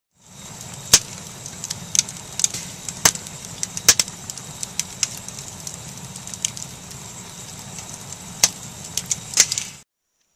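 Wood fire of split logs crackling, with sharp irregular pops over a steady hiss. It cuts off suddenly near the end.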